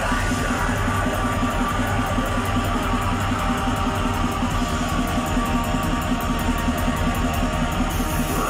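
Black metal band playing live: distorted electric guitars over bass and drums, loud and dense with a fast, even pulse, heard from within the audience.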